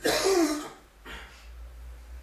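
A man coughs to clear his throat, into his hand: one loud cough, then a second, weaker one about a second later.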